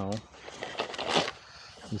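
Handling noise: a few short rustles and scrapes as gloved hands switch from the tape measure to the laser measure, after the tail of a spoken word.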